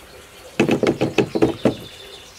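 Cast-metal clamp-on fishing rod holder being adjusted by hand on a canoe's gunwale: a quick run of about eight clicks and knocks, starting about half a second in and lasting just over a second.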